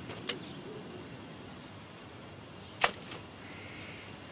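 Quiet, steady outdoor background with a faint sharp click about a quarter second in and one loud, very short sharp snap a little before three seconds in, followed by a fainter one.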